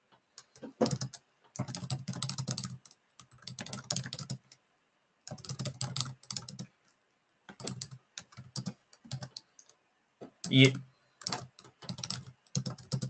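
Computer keyboard typing in bursts of rapid keystrokes separated by short pauses. A single spoken word comes near the end.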